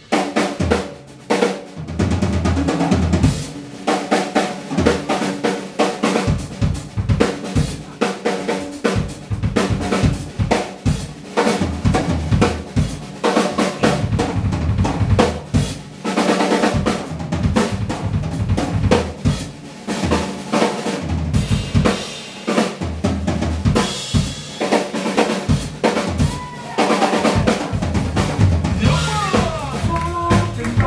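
Live drum kit playing a busy passage of snare, bass drum and rolls, with low bass notes underneath and other band instruments joining near the end.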